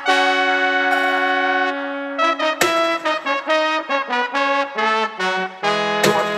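A recorded horn section in a dub track on the DJ's decks. It holds a chord for about two seconds, then plays a run of short stabbed notes, then holds another chord near the end.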